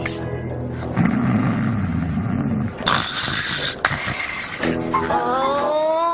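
Cartoon snoring from a sleeping machine character: a low rasping in-breath about a second in, then a hissing out-breath, over gentle background music whose melody rises in the last second or so.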